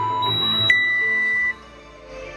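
Electronic workout timer giving its start signal over background music: a click, then one high beep held just under a second, after which the sound drops off sharply.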